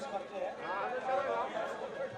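Only speech: indistinct men's voices talking.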